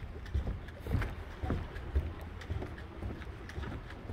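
Footsteps on the wooden planks of a pier deck, faint irregular knocks, over a low rumble of wind on the microphone.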